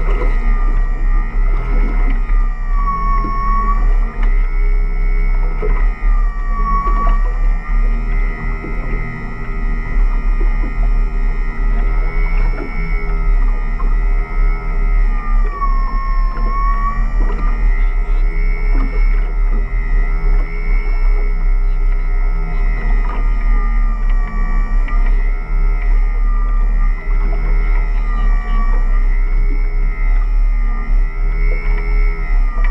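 Electric crab pot puller on a boat's davit hauling a pot line up, its motor whining steadily. The pitch sags briefly a few times as the load on the line comes and goes, over a steady low rumble.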